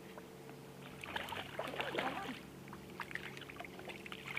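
Shallow river water splashing and trickling lightly around a person and a small dog wading at the shore, with short clicks about a second in, over a steady low hum.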